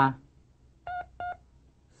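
Two short, identical electronic beeps about a third of a second apart: the cue signal recorded on a language-drill tape.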